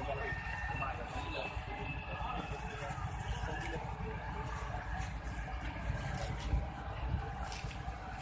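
A steady low rumble with indistinct voices of bystanders talking in the background.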